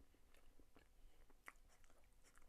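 A person chewing a mouthful of durian mille-crepe cake, heard faintly as scattered small mouth clicks, one a little sharper about one and a half seconds in.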